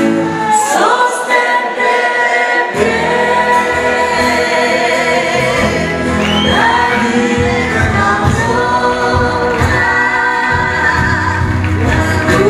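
A live band plays a blues song while women sing held, wavering notes into microphones. The bass drops out briefly and comes back in about three seconds in.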